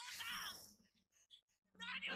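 A boy's voice crying out in a strained, high-pitched shout in the episode's dialogue, fading out within the first second, then a short pause with a few faint clicks before another line of dialogue begins near the end.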